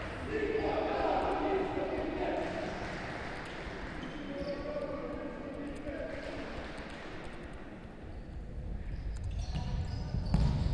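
Futsal ball being kicked and bouncing on a wooden court in a large hall, with players' shouts echoing around it.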